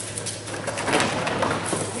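A whippet running through a fabric agility tunnel: a few quick paw taps, then a rustling, scraping noise of the tunnel fabric from about half a second in, loudest near the middle, over a steady low hum.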